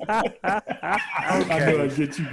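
Several men laughing hard, in quick repeated bursts of laughter.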